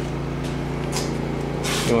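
Steady electric motor hum, with a couple of faint clicks partway through; a voice starts just at the end.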